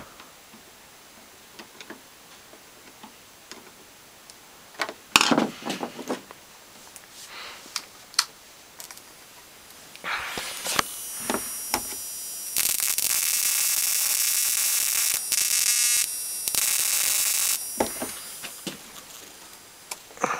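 Flyback transformer run from a 555 ignition-coil driver, giving a loud, high-pitched whine and hiss of high-voltage sparking that starts about halfway through and stops near the end, after a few quiet knocks of handling.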